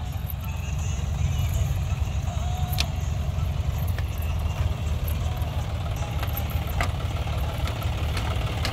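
John Deere tractor's diesel engine running steadily as it pulls a seed drill through tilled soil, with a few sharp clicks from the drill.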